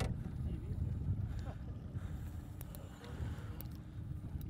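Wind rumbling on the microphone and choppy lake water lapping against the boat's hull, with a faint steady hum underneath.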